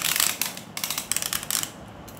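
Rapid plastic clicking and rattling in two spells of under a second each, from Beyblade tops and launchers being handled and readied for the next launch.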